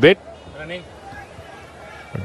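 A man's voice ends a word at the start, followed by low background noise with a faint distant voice.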